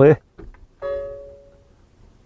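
A single chime-like note, starting just under a second in and fading away over about a second, after a couple of faint ticks.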